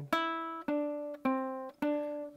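Baritone ukulele picking four single notes about half a second apart, each ringing and fading before the next. It plays back the four-note tune of the phrase just sung, as a cue to echo.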